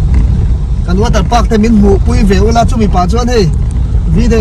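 A person speaking in an unfamiliar language over the steady low rumble of a car moving, heard from inside the cabin.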